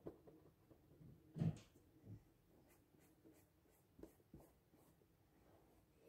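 Faint scratching strokes of colouring on paper, near silence otherwise, with one brief louder sound about a second and a half in.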